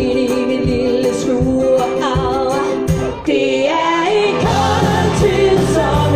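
Live rock band with women singing: a held chord over a steady beat, a sung line in the middle, then the band comes in fuller with bass and drums about four and a half seconds in.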